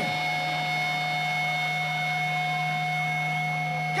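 A steady electric hum with a few held tones from the band's amplified stage rig, idling between songs. It does not change in pitch or loudness.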